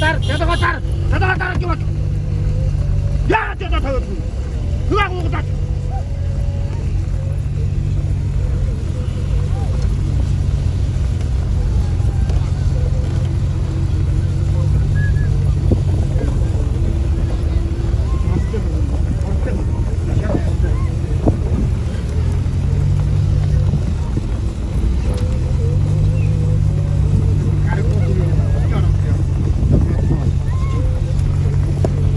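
Vehicle engine running steadily while driving at speed, its note dipping and climbing again about two-thirds of the way through. Voices call out now and then over it.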